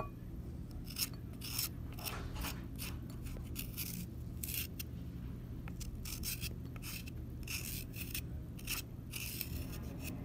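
Metal vegetable peeler scraping strips off a raw carrot: short rasping strokes repeated unevenly, about two a second.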